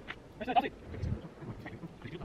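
A single short voice-like call about half a second in, over faint background noise.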